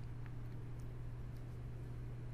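Quiet background: a low steady hum with faint hiss and a few very faint ticks.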